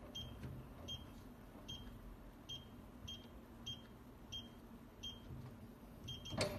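Electronic keypad on a digital gun safe beeping once per key press as a code is entered: eight short, high, faint beeps, a little under a second apart.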